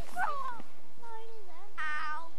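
Children's high-pitched voices calling out wordlessly: a quick rising-and-falling cry just after the start, a lower sliding call in the middle, and a bright squeal near the end.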